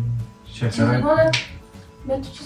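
A person's voice speaking briefly over background music, with a short sharp hiss or click about a second and a half in.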